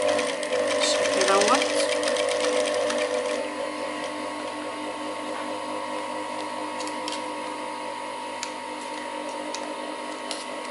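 Queen industrial sewing machine stitching in a fast run of needle strokes for about the first three seconds, then stopping while its motor keeps up a steady hum. A few light clicks follow near the end.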